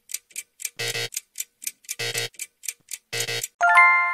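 Quiz thinking-time sound effect: a clock ticking about four times a second, with a short buzzy tone about once a second. Near the end a bright chime rings out and fades, marking the correct answer.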